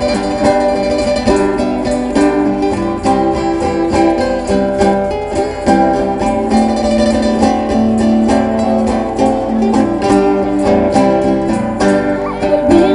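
Live band playing an instrumental passage: acoustic guitars strummed in a steady rhythm together with an electric guitar, without singing.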